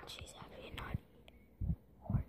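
Faint whispering voice in a small room, with a brief low bump about one and a half seconds in.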